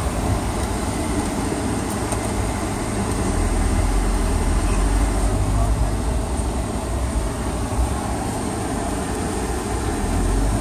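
Steady low rumble of a car driving slowly, engine and road noise heard from inside the cabin.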